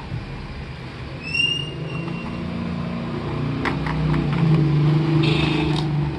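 A motor vehicle's engine running, its hum swelling louder in the second half. Over it come clicks and a brief rustle of a clear plastic tray being handled, and a short high chirp about a second in.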